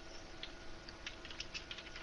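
Faint computer keyboard typing: a run of light key clicks over a faint steady hum.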